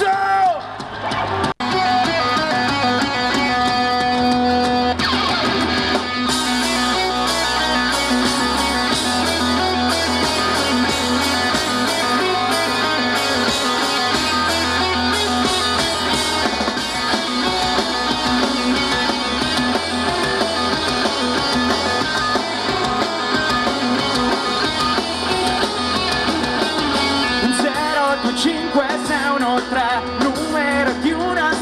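Live rock band playing loudly through a concert PA, with electric guitars and bass. The sound cuts out for an instant about one and a half seconds in, a few held notes follow, and then the full band with drums comes in about five seconds in and plays on.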